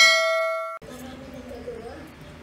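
Notification-bell 'ding' sound effect: a bright, ringing chime that fades and then cuts off abruptly under a second in, giving way to faint room sound.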